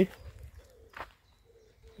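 A bird's soft, low calls repeating faintly in the background, with one short sharp click about a second in.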